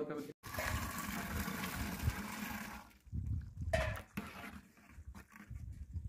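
A rush of liquid pouring and splashing into a large metal cooking pot, lasting about two and a half seconds, then a few low thumps.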